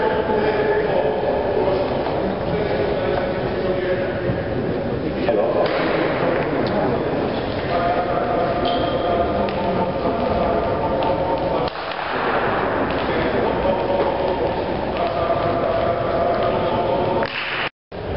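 Indistinct voices carrying through a large, echoing sports hall.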